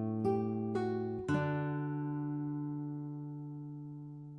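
Background music on acoustic guitar: a few plucked notes in the first second and a half, then a last chord left ringing and slowly fading.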